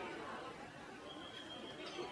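Faint background chatter of several people talking at once, with a thin steady high tone in the second half and a small click near the end.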